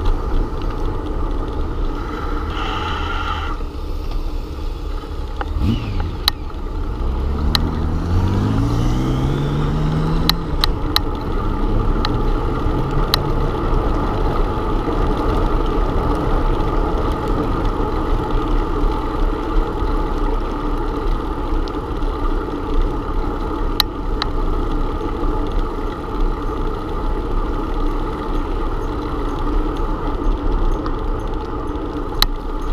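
Wind rushing over a bicycle-mounted camera's microphone and tyres rolling on asphalt during a ride, with scattered sharp clicks. A drone rises in pitch from about a quarter of the way in, then holds steady for a few seconds.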